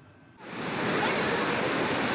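A brief quiet, then about half a second in the steady rushing of a fast, muddy flood torrent sets in and holds.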